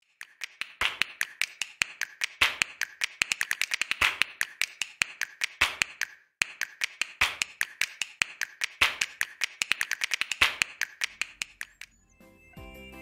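Typing sound effect: rapid, irregular key clicks in two runs of about six seconds each, with a brief break near the middle.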